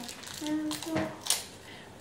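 Faint, brief voice sounds, then a light knock about a second in.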